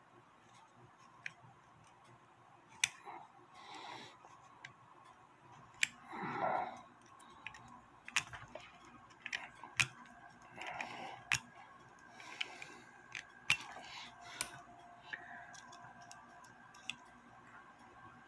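Scattered small metallic clicks and taps, with a few short scrapes, from handling a clock's mainspring barrel and its arbor with pliers and a pointed tool.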